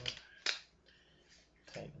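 A dark blue disposable latex glove being pulled on, giving one sharp snap about half a second in as the rubber cuff slaps against the wrist, then faint rubbing of the rubber.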